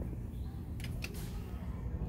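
Quiet background hum of a store, with a few faint clicks about a second in.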